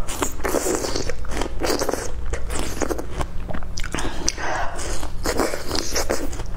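Close-miked biting and chewing of a slice of star fruit: crisp crunches in repeated short bursts, over a low steady hum.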